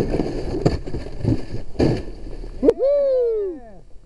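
Rough scraping and rustling with a few harder knocks as a whitewater kayak seal-launches, sliding down the snowy bank into the river. The noise stops abruptly about two-thirds of the way through, followed by one long whooping cheer that rises and falls.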